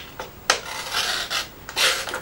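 A Stanley-style utility blade in a pocket tool slicing through a sheet of paper, in a few short hissing strokes with the paper rustling, the last one near the end.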